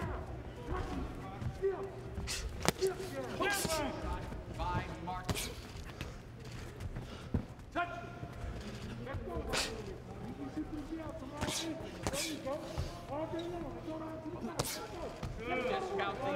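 Boxing gloves smacking as punches land, a sharp slap every second or two, with voices calling out from ringside underneath.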